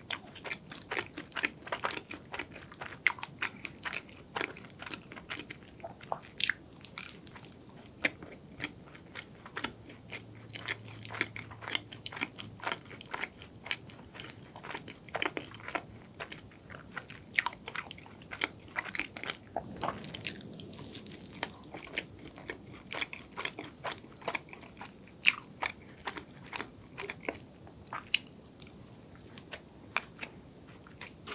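Close, crunchy chewing and biting of a flaky, crisp-layered pastry: a dense, irregular run of small sharp crackles.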